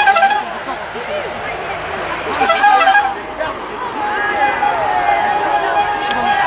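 Vehicle horns tooting from publicity caravan cars driving past: a short blast at the start, another about two and a half seconds in, and a longer one from about four seconds on, amid the voices of roadside spectators.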